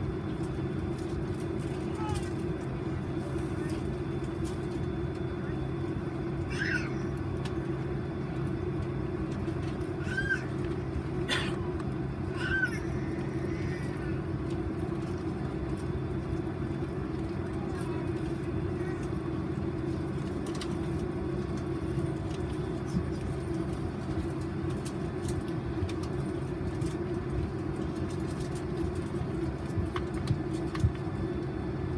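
Steady hum inside a parked Boeing 767's cabin, a low drone with a steady tone above it, typical of the aircraft's air-conditioning running at the gate. A few short high squeaks, rising and falling, come between about six and thirteen seconds in.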